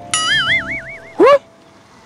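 A cartoon-style comedy sound effect: a bright tone that holds and then wobbles up and down in pitch for just under a second, over a soft music bed. A short, rising vocal syllable follows a little after a second in.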